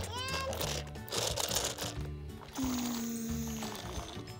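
Background music playing, with the light knocking and rustle of plastic toys being handled on a tabletop.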